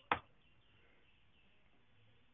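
A single sharp keystroke click on a computer keyboard, followed by near silence with faint room tone.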